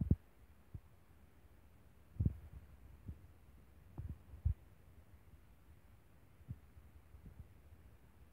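A series of short, dull, low thumps at uneven spacing, about eight in all, over a faint low hum. The strongest come right at the start, a little after two seconds in and about four and a half seconds in.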